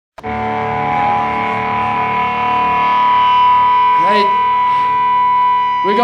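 Electric guitar amplifiers on stage left ringing with sustained feedback: several steady tones held without fading, the strongest a high whistle-like tone, starting abruptly at the very beginning. A short shout from the singer comes about four seconds in.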